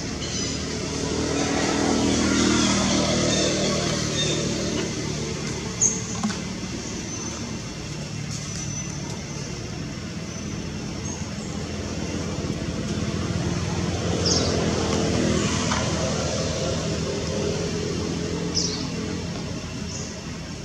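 Motor vehicles passing by, two in turn. Each engine rises and then fades over several seconds, its pitch sliding as it goes by.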